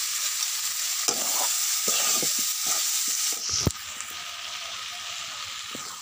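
Pork, potato and tomato curry sizzling in a black iron wok while being stirred, with several short scraping strokes over the steady hiss. About three and a half seconds in there is a sharp tick and the sizzle drops to a quieter hiss.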